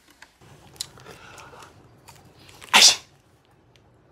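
A person sneezing once, loudly and sharply, near the end, after a few faint mouth clicks.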